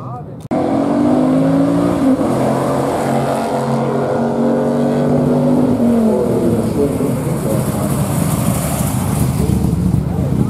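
A drag-race car's engine running loud at steady revs, cutting in suddenly about half a second in. Its pitch falls away around six seconds in, and a rough, noisy engine rumble follows.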